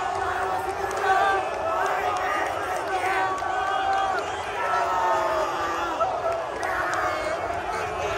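Stadium crowd of football fans cheering, many voices at once, with a man shouting close to the microphone.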